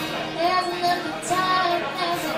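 Live female vocal singing held, sustained notes over strummed acoustic guitar accompaniment.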